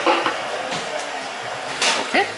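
Background music over room noise, with a few short clicks and taps from a playing card and its cardboard box being handled.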